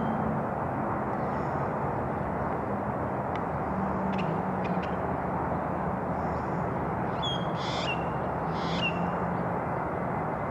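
Steady outdoor background noise with a few faint clicks, and a bird calling twice near the end, each call short with a quick drop at its tail.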